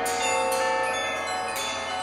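Pitched metal mallet percussion in a live percussion-ensemble performance. A few struck notes ring on and overlap into a sustained cluster of bell-like tones.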